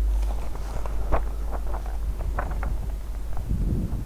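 Handling noise: a scatter of light clicks and knocks, as the notebook is lowered and the camera view shifts, over a steady low hum.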